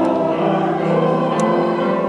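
Congregation singing a hymn together with keyboard accompaniment, holding sustained chords.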